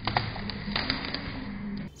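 Rope-spun 12 V car alternator whirring as it turns, with a few light ticks.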